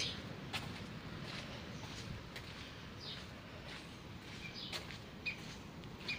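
Birds chirping now and then, a few short high calls, over faint outdoor background noise, with occasional soft footsteps on a stone-paved path.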